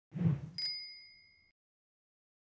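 A short rushing sound, then a single bicycle-bell ding about half a second in that rings out and fades over about a second, as a logo sound effect.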